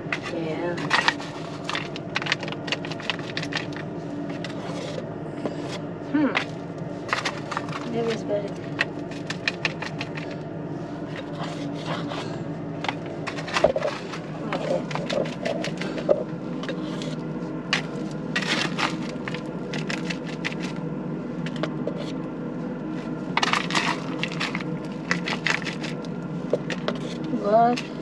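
Hand digging in loose dirt and gravel: a small hand tool and fingers scraping and raking soil, with rocks clicking and crackling at irregular moments, over a steady low hum.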